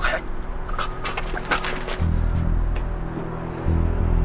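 Short strained grunts and breathing from a scuffle, then a heavy low dramatic music score that comes in about halfway and swells again near the end.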